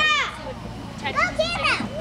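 Young children's excited, high-pitched shouts and calls: one falling call at the start and a cluster of shorter calls about a second in.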